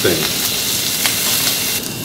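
Beef tenderloin steak searing in a ridged grill pan over a gas flame: a steady sizzle with a faint pop or two.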